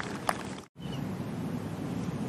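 Steady outdoor background noise with wind rushing on the microphone. It cuts out for an instant about two-thirds of a second in, then resumes unchanged.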